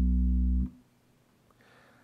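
Bass guitar holding a low B, the last note of a fingerstyle E–E–B rhythm figure. The note is damped and cuts off suddenly under a second in.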